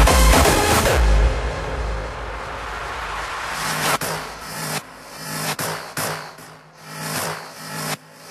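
Hardstyle electronic dance music. The pounding kick and bass stop about a second in, leaving a fading bass. From about four seconds a sparser pulsing synth pattern comes in, as in a breakdown.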